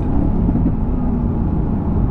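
Mercedes-AMG GT S twin-turbo V8 and road noise heard from inside the cabin while driving: a steady low rumble.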